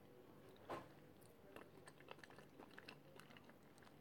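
Near silence with faint, soft chewing of a mouthful of moi moi, steamed bean pudding: small scattered mouth clicks.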